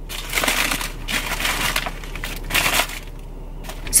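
Paper sandwich wrapper crinkling and rustling in several bursts as it is pulled open around a croissant sandwich, quieting about three seconds in.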